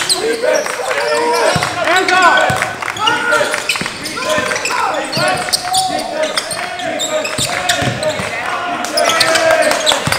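A basketball being dribbled on a hardwood gym floor, with repeated bounces. Sneakers squeak in short rising-and-falling chirps, and voices call out across the gym.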